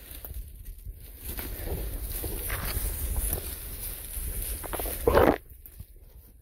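Footsteps and brush rustling as a person walks down a forest trail, over a steady low rumble on the microphone. A louder, brief rustle comes about five seconds in.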